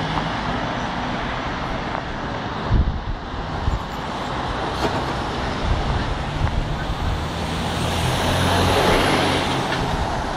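Busy city road traffic: car engines and tyres passing steadily, with a heavy lorry's engine and tyres growing louder as it passes close near the end. A short thump about three seconds in.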